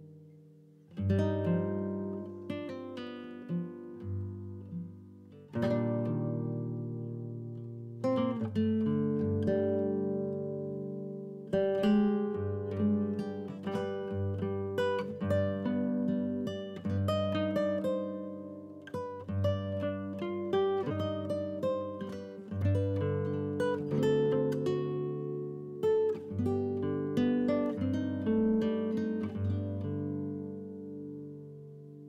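Background music on acoustic guitar: a steady run of plucked notes and chords, each ringing and fading before the next.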